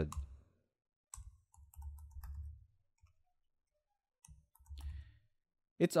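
Soft computer keyboard keystrokes: a few scattered clicks in two short clusters, with quiet gaps between.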